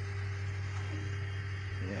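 Steady low hum with a faint steady whine from an idle Velleman Vertex K8400 3D printer, its job cancelled but its fans still running. A voice starts at the very end.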